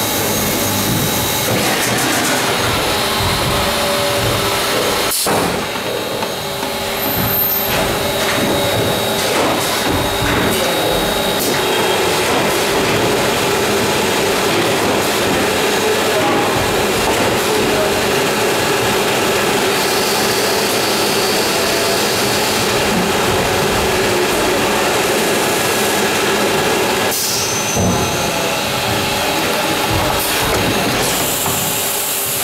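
1981 Illig UA150 vacuum-forming machine running through a forming cycle, a loud steady machine noise. A sharp click comes about five seconds in, and a steady hum joins about twelve seconds in and drops away near the end.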